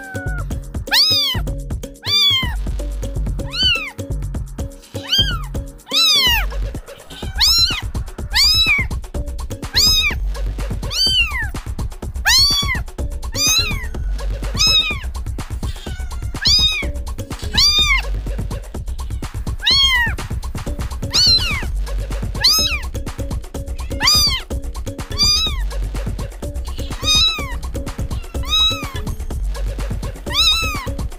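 Kittens meowing over and over, each call a short high cry that rises and falls in pitch, about one a second. Background music with a steady low bass pulse plays underneath.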